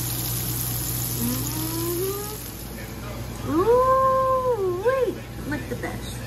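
Battered shrimp frying in hot oil in a cast-iron skillet, a steady sizzle for the first two seconds. About three and a half seconds in comes a loud, drawn-out howl-like call that rises, holds its pitch and then wavers before stopping, after a fainter rising call a second or so earlier.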